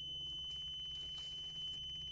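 A mini digger's ignition warning buzzer sounds one steady high-pitched tone, starting abruptly as the key is turned to the first position with the engine not running.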